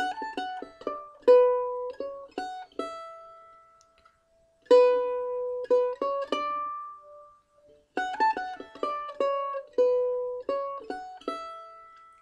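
Mandolin picked one note at a time, playing a short melody in three phrases with brief pauses between them; the last note of each phrase is held and rings out.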